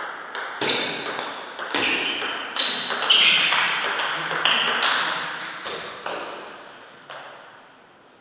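Table tennis rally: the ball clicks sharply off rackets and the table in quick succession, each click ringing briefly, for about seven seconds before the point ends.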